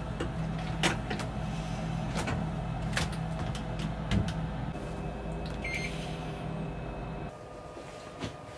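Hitachi top-loading washing machine running with a steady low motor hum, with a few sharp knocks as its lids are shut. The hum stops about seven seconds in.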